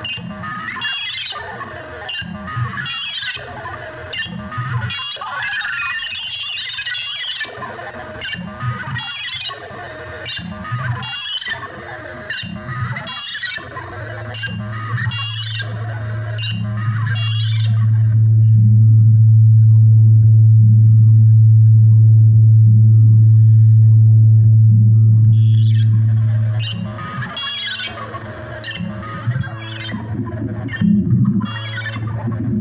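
Electronic techno pattern played live on Korg Volca synthesizers: steady ticking percussion under busy upper synth lines. About halfway through a held deep bass note swells in, the upper parts drop out and leave the sustained bass tone alone as the loudest part, and the full pattern comes back near the end.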